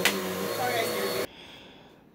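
Bissell CleanView OnePass 9595A multi-cyclonic upright vacuum running on carpet, a steady motor hum and whine over rushing air, which stops suddenly just over a second in.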